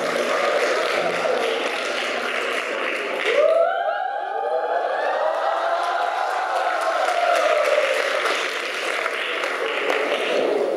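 Crowd noise from a hall audience, then about three and a half seconds in a group of students lets out a long shout in unison as a class cheer, rising in pitch and then slowly falling over about five seconds.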